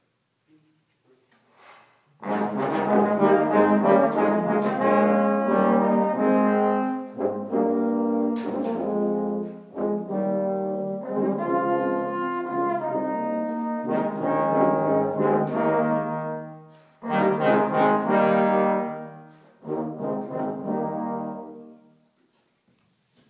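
Small brass ensemble of trumpet, two trombones and tuba playing a passage of held chords, starting about two seconds in, with a few brief breaks between phrases and stopping cleanly near the end.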